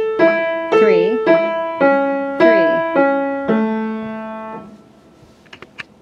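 Heintzman upright piano playing broken A major triads in the left hand, one note at a time, about two a second. The last note is a low one, held for about a second and then damped. A few faint clicks follow near the end.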